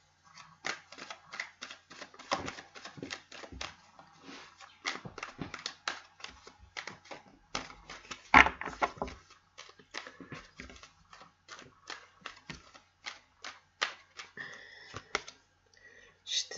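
A deck of tarot cards being shuffled by hand: a quick, irregular run of card clicks and slaps, with one louder slap about eight seconds in.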